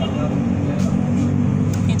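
A motor engine running steadily close by, a low even hum.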